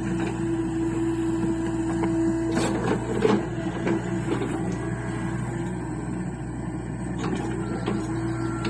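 John Deere mini excavator running, its engine and hydraulics giving a steady hum with a held whine. About three seconds in there is a cluster of clanks and knocks from the working machine.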